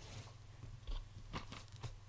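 About five short clicks and knocks of a drinking glass being picked up and handled, three of them close together near the end.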